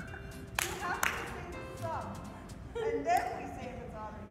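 Background music with women's voices calling out, and two sharp claps about half a second and a second in.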